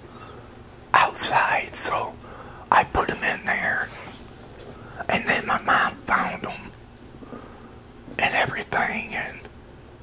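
A man whispering a story into a close lapel microphone, in four short phrases with pauses between.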